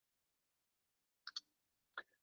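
Computer mouse clicking twice in quick succession a little past halfway, over near silence.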